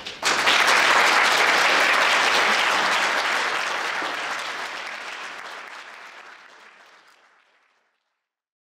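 Audience applauding, starting just after the start, loud at first, then fading out gradually to silence near the end.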